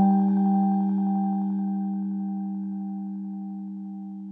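Background music: one sustained soft keyboard chord, struck just before, fading slowly away.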